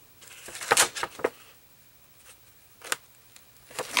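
Sheet of patterned scrapbook paper being handled and lifted by hand: a quick cluster of crisp paper rustles and crackles about a second in, then a few isolated light clicks of the paper against the album page.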